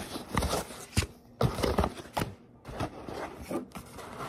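Cardboard shipping box being opened by hand: flaps and packaging scraping and rustling, with several sharp cardboard snaps and clicks.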